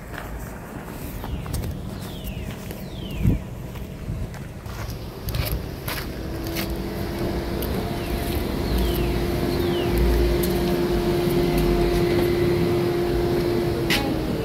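Outdoor ambience while walking: wind rumbling on the microphone, scattered taps and clicks, and a few short descending chirps. About six seconds in, a steady hum comes in and grows louder.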